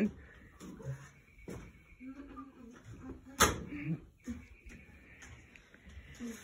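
Quiet scrubbing and handling noise of long-handled brushes working against the walls and roof of a horse trailer, with small knocks and one sharp knock about three and a half seconds in, under a faint murmured voice.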